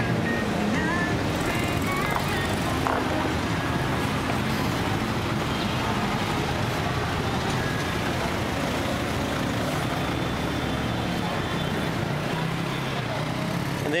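Steady city street traffic: car and motorcycle engines running close by, with a continuous hum of road noise.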